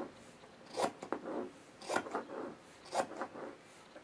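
Scissors snipping through fabric, three short cuts about a second apart.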